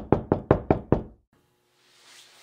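Knocking on a door: six quick, loud knocks at about five a second, stopping after about a second.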